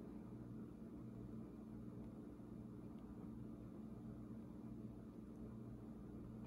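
Quiet room tone with a faint steady low hum.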